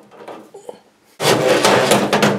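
Faint handling clicks, then, just over a second in, a Makita cordless drill starts running steadily and loudly, driving a screw into the range hood's electrical box.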